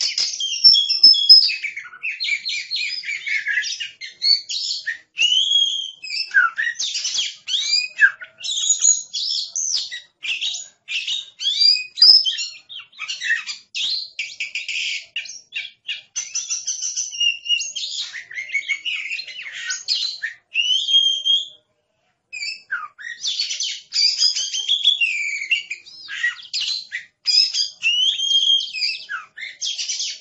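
Oriental magpie-robin (kacer) singing a long, varied song of sliding whistles and rapid chattering note strings, broken by a pause of about a second two-thirds of the way through.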